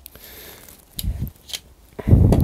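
A Knipex control-cabinet key, a plastic-handled key with metal socket bits, being handled: a faint rustle, then a knock against the bench about a second in and a smaller click shortly after.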